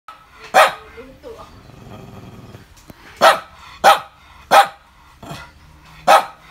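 Small long-haired white dog barking: one sharp bark about half a second in, a low growl, then three sharp barks in quick succession about two-thirds of a second apart.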